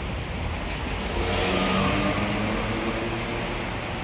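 A car engine running, swelling to its loudest about a second and a half in and then easing off, heard inside a concrete parking garage.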